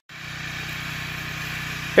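Portable generator engine running steadily in the background, a constant hum, powering non-LED shop lights.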